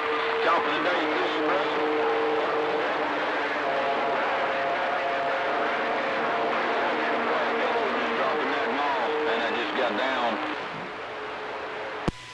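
CB radio receiver on channel 28 hissing with static, with faint, overlapping voices of distant stations garbled in the noise. Steady whistling tones sit under the voices for most of the time, and it all drops a little quieter near the end.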